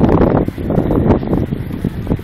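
Wind buffeting a phone's microphone: a loud, uneven low rumble that surges and dips from moment to moment.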